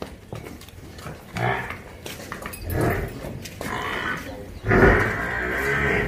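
Water buffalo calling: short calls about one and a half and three seconds in, then a longer, louder call starting near the end.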